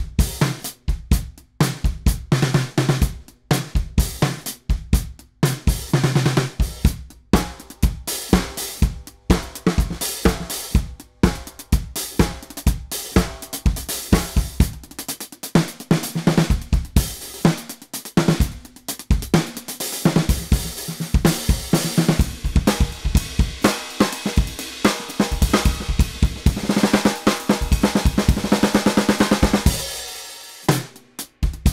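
Drum kit played with sticks: a groove on Ludwig Acro metal-shell snare drums in new tunings, lower and drier, the brass one nearly dead, together with kick drum, hi-hat and cymbals. Near the end the cymbals wash louder and more steadily.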